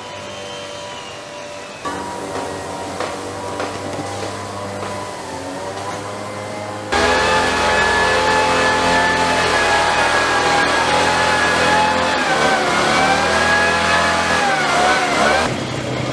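Small engine of a motorized backpack disinfectant sprayer running steadily, getting louder about seven seconds in, its pitch dipping and rising again near the end as the throttle changes.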